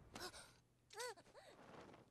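Near silence with two faint, brief vocal sounds. The second comes about a second in and rises and falls in pitch.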